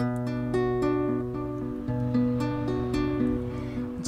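Classical guitar playing a slow picked introduction, each chord left to ring as the notes change.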